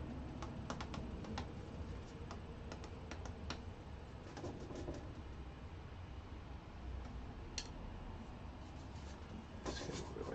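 Bristle brush working oil paint on a stretched canvas: faint scratchy strokes with scattered light taps, thickest in the first few seconds and again just before the end, over a low steady hum.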